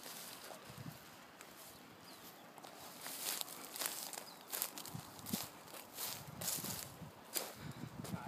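Footsteps through dry grass, faint at first, then steady at about two steps a second from around three seconds in.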